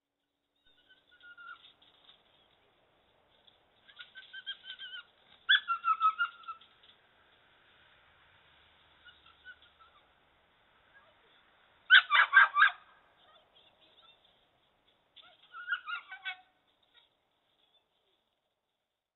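A trapped dog whining and yelping in high, gliding calls, with a quick run of four or five sharp barks about twelve seconds in, the loudest sounds, and a shorter burst of calls a few seconds later.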